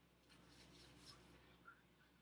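Near silence: room tone with a few faint, brief rustles in the first second or so.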